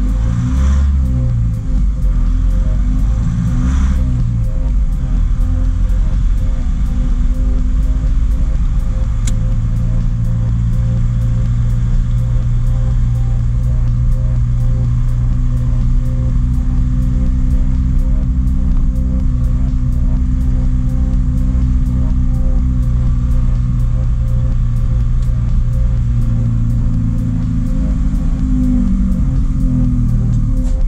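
JAC light truck's diesel engine heard from inside the cab while driving. Its pitch rises and falls through gear changes in the first few seconds and again near the end, with steady running in between.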